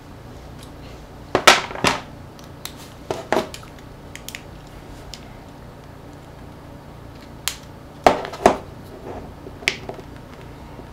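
Sharp clicks and taps of small tools and plastic parts as a small Sony MP3 player is handled and pried apart on a table: two louder clicks about a second and a half in, another around three seconds, and a cluster of clicks from about eight seconds on, with faint ticks between.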